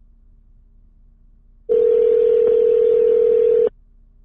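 Telephone ringback tone: one steady ring about two seconds long, starting a little under two seconds in, as an outgoing phone call rings through, heard over the phone line.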